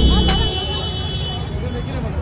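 Busy street ambience: road traffic and many people talking, with a steady high-pitched tone through the first second and a half.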